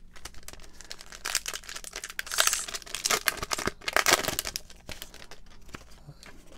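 Pokémon TCG booster pack's foil wrapper crinkling and tearing as it is opened by hand. The crackling starts about a second in, is loudest in the middle and dies down near the end.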